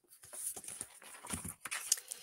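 Paper rustling and small knocks of a picture book being handled as its page is turned, an irregular run of soft scrapes lasting a little under two seconds.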